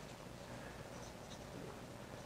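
Marker writing on a whiteboard: faint strokes as letters are written.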